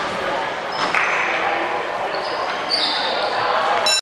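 Voices of players and onlookers chattering and calling, echoing in an indoor sports hall, with a few short high squeaks over them.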